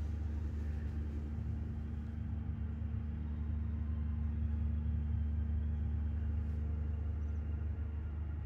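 Steady low background hum with a few faint steady tones above it, unchanging throughout.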